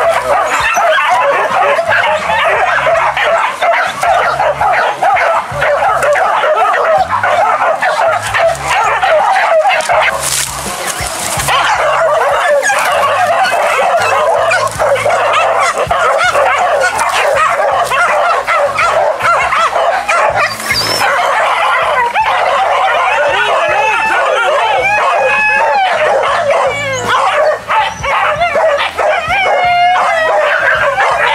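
A pack of hunting dogs barking and yelping continuously, many voices overlapping, over background music.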